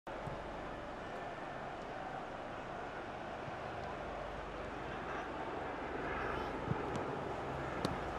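Steady pitch-side hiss of an empty football stadium with no crowd, with faint shouts from players. Two sharp ball kicks sound near the end, the last one a cross into the box.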